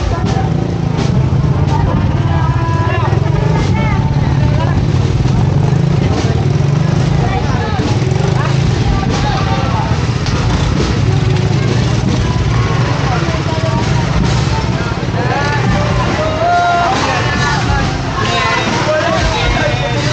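Voices of a street crowd chattering, over a steady low drone of motorcycle engines running and passing close by.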